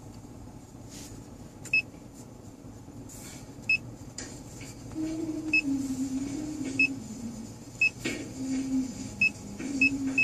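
Short high-pitched touch-confirmation beeps from an aftermarket car head unit's touchscreen as menu items are tapped, about seven beeps at irregular intervals. From about halfway a low, wavering tone runs underneath.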